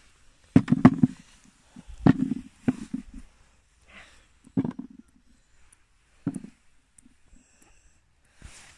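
About five separate knocks and soft thumps, spaced a second or more apart, with a brief rustle about four seconds in: handling noise from picking up fallen small plums.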